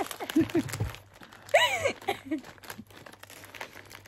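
Plastic snack packets crinkling and crackling in hands, with a woman's laughter early on and a high squeal of a laugh about a second and a half in.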